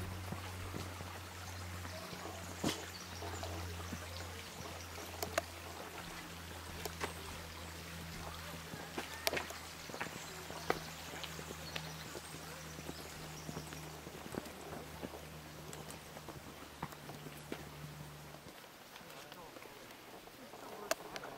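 Outdoor ambience on a forest trail: a steady low hum that cuts off suddenly near the end, with scattered sharp clicks and taps throughout.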